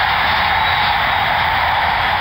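Large stadium crowd cheering a home-team touchdown, a steady roar of many voices.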